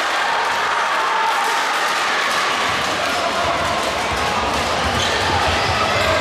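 Basketball game in a sports hall: steady crowd noise and voices from the stands, with a basketball bouncing on the hardwood court in repeated low thumps from about halfway through.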